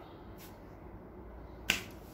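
A single sharp click near the end, with a much fainter tick about half a second in, over quiet room tone.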